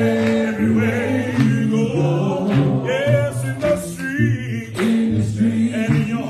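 A cappella gospel singing: a man's lead voice with a group of voices singing along, in long held notes.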